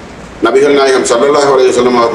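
A man speaking, his voice starting about half a second in after a brief pause.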